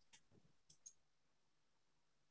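Near silence with a few faint computer mouse clicks in the first second, as a screen share is stopped.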